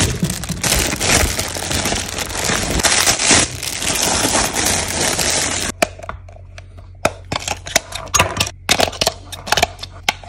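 Clear plastic bag crinkling steadily while it is handled, for about the first six seconds. Then it stops abruptly, and scattered light clicks and taps follow as a small screwdriver works the screw on the toy's plastic battery cover.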